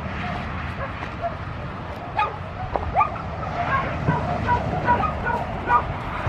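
Dogs barking and yipping in short high calls, with a few quick rising yelps about two to three seconds in and the calls coming thicker in the second half.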